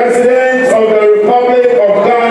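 A man's voice through a public-address system, in long, evenly held notes that step from pitch to pitch, halfway between speaking and chanting.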